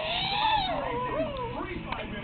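A baby girl squeals with delight: one long high-pitched squeal that rises and then falls over most of a second, followed by a few shorter squeaky vocal sounds.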